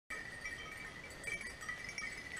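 Hunting dogs' bells ringing faintly and steadily as the dogs work through the woods on a wild boar hunt.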